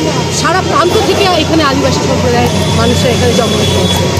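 Several people's voices talking over one another, with a steady low hum underneath.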